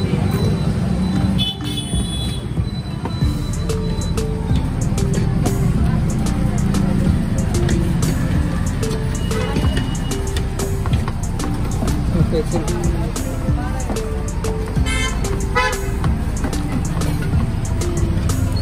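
Steady street traffic rumble with vehicle horns tooting, under a background-music melody; scattered small clicks throughout.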